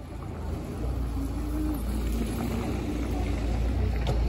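Street noise: a low rumble that swells about a second in and holds, with faint voices in the background.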